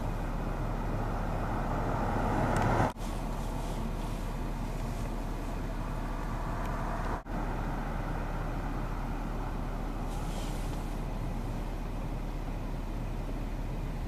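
Steady road-traffic noise, with a vehicle going by that grows louder over the first three seconds. The sound drops out for an instant twice, about three and seven seconds in.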